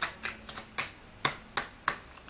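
A tarot deck being shuffled by hand, cards snapping against each other in a quick, uneven string of sharp clicks a few tenths of a second apart.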